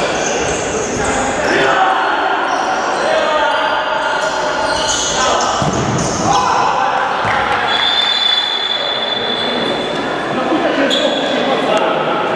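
Indoor futsal play: players shouting to each other, with the ball being kicked and bouncing on the wooden court, echoing through a large sports hall.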